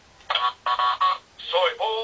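Thinkway Toy Story Collection Buzz Lightyear talking figure playing a recorded Spanish phrase in its toy-mode voice through its small built-in speaker. It comes in about a quarter second in, sounding thin and tinny, as if coming from a loudspeaker.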